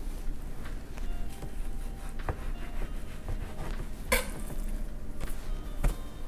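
Kitchen knife cutting through a raw salmon fillet on a cutting board: small scattered knocks and handling sounds, with one short, sharper sound about four seconds in.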